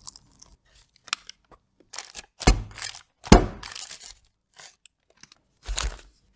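Dull thumps and papery crunches from a parchment-lined cake mould being handled and set down on a table, the two loudest about halfway through and another near the end.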